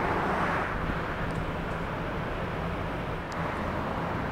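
Steady outdoor city background noise: a continuous low roar with a faint low hum, a little louder at the start.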